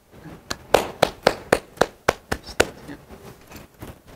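A hand slapping a person's own buttocks through clothing, about nine quick slaps at roughly four a second, stopping after about two seconds.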